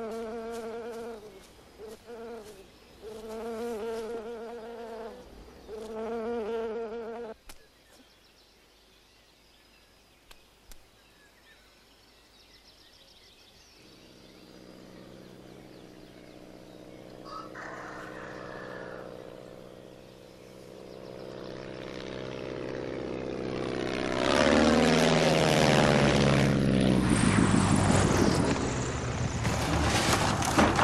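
Propeller engine of a single-engine biplane approaching from far off, growing steadily louder, then passing close with its pitch dropping as it comes in to land.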